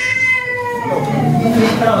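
A small child crying: one long wail that slides down in pitch and fades near the end, with adults talking underneath.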